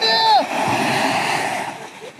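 A man's long call in the first half second, then a wash of surf breaking on the beach that slowly fades away.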